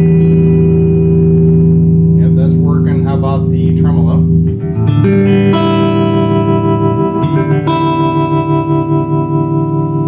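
Electric guitar chords ringing out through a Blackface Fender Princeton Reverb tube amp with its reverb turned up. Each chord is held long, and the chord changes twice. In the second half the sound pulses evenly in volume, as the amp's tremolo is turned up.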